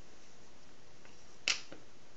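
A sharp plastic click about one and a half seconds in, followed by a fainter one: a block of cemented PVC pipe pieces set down onto a paper template on a glass sheet.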